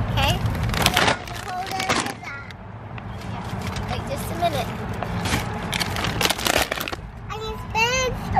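Large plastic snack bags crinkling as they are handled, in several bursts. A young child's high voice calls out near the end.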